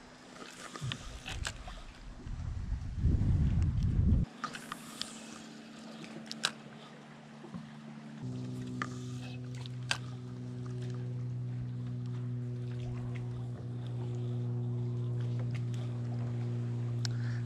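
Minn Kota electric trolling motor humming steadily, coming on about halfway through and holding one even pitch. Before it, a low rumble of wind on the microphone with a few scattered clicks.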